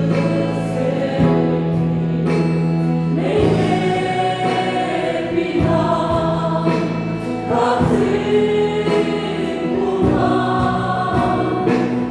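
Live gospel worship band playing a song, with keyboards, bass and guitar under several voices singing together. The chords are held and change every second or two.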